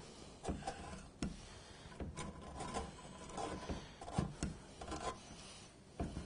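Nylon ratchet-type fan mounting ties being pushed through an electric cooling fan's plastic frame and an aluminium radiator's fins: faint, irregular rubbing with small clicks.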